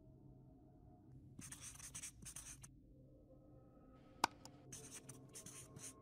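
Felt-tip marker writing: a run of quick, scratchy strokes lasting about a second, then a sharp click, then a second run of strokes. All of it faint.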